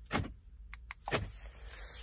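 Central door-lock actuators of a 2018 Ford Escape clunking twice, about a second apart, as the newly programmed key fob locks and unlocks the car.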